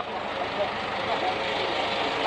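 Flatbed tow truck's engine running steadily.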